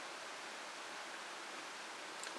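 Faint steady hiss with no distinct events: room tone and recording noise.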